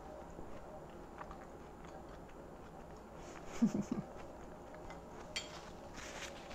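A person chewing a mouthful of soft cake and apple pie: faint, scattered wet mouth clicks, with one sharper click near the end.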